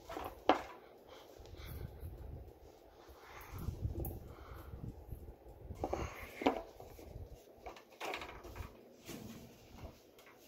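Hampton Bay Littleton ceiling fan running, its airflow buffeting the microphone in an uneven low rumble. A few short, sharp sounds cut in: the loudest about half a second in, others at around six and a half and eight seconds.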